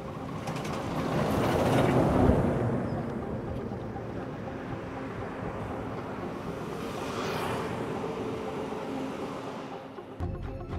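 Road traffic: a heavy truck drives close by, loudest about two seconds in, then fades, and another vehicle passes about seven seconds in.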